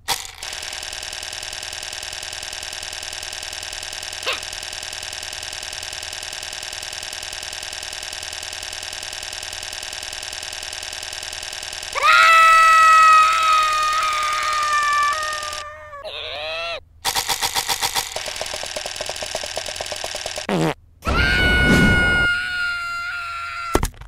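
Cartoon sound effects for a clay animation. A steady buzzing tone runs for about twelve seconds, then a loud, gliding cartoon cry sets in. A quick rapid rattle follows, then a low rumble and another cry near the end.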